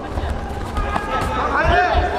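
People's voices calling out and chattering in a sports hall, with thuds of feet on the competition mat.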